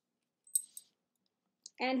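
A tarot card being handled: a brief crisp click about half a second in, followed by a fainter one. A woman's voice begins near the end.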